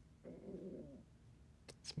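A man's voice humming briefly to himself, one short wavering hum under a second long, followed near the end by a few faint clicks.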